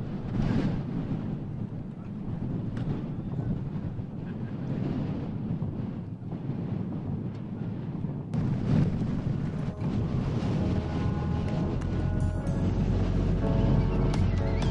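Outdoor wind rumbling and buffeting on the microphone, rough and uneven. In the second half, music fades in with sustained, held notes and grows louder toward the end.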